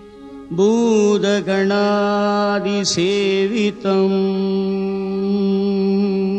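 Indian devotional music: a steady drone with a melodic line that slides and curls through ornamented notes for about three seconds, then settles on one long held note.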